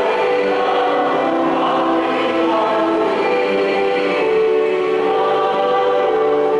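A choir singing a slow church hymn, with long held notes.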